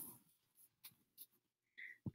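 Near silence: room tone, with a few faint soft ticks.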